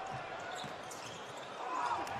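A basketball dribbled on a hardwood court, a few faint knocks, over a steady arena crowd murmur.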